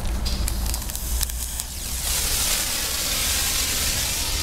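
Exothermic cutting torch: a few sharp clicks as the rod is struck against the battery striker plate, then from about two seconds in a steady hiss and sizzle as the rod burns in the oxygen stream.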